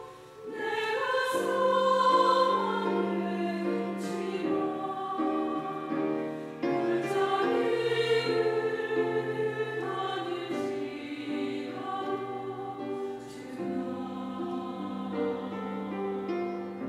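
A mixed church choir sings a hymn anthem in sustained chords, accompanied by a small string ensemble of violins and cellos. There is a brief lull at the very start before the voices come back in full.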